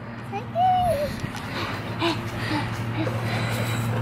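A toddler's short high vocal call about half a second in, then a few faint small sounds, over a steady low hum.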